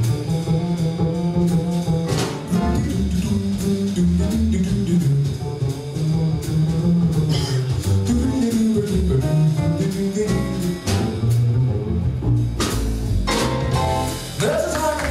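Jazz trio of piano, upright bass and drums playing a bebop tune instrumentally, the upright bass prominent with a steady line of low notes under piano chords and ride cymbal strokes.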